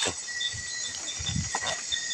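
Night insects, crickets among them, keep up a steady high drone with a chirp repeating about four times a second. Soft low rustling and handling noise comes in the second half.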